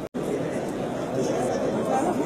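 Indistinct chatter of several people's voices in a hall. A brief dropout in the sound comes right at the start, where the footage is cut.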